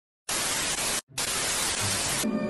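Television static hiss, the sound effect of a lost signal. It starts about a quarter second in and cuts out for a moment about a second in before resuming.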